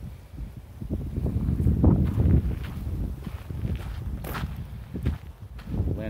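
Footsteps walking along a gravel trail, with rumbling from a hand-held phone and a brief sharp click about four seconds in.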